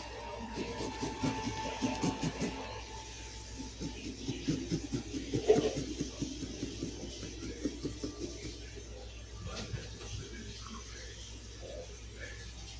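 A knife trimming the rim of a hollowed pumpkin while the pumpkin is handled on a table: a run of quick scrapes and small knocks, with one louder knock about halfway through.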